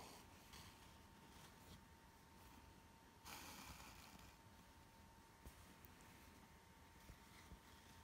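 Near silence with a faint steady hum. About three seconds in there is a faint, brief rustle of embroidery thread being drawn through the cross-stitch fabric of a towel.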